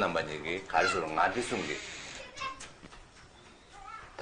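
A person speaking for about the first two seconds, then a pause.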